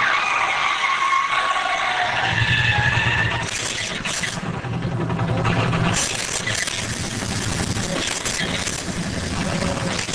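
Stunt vehicle in a staged action run: tires screeching at the start, then an engine running loud and low. Several sharp cracks and bangs follow later.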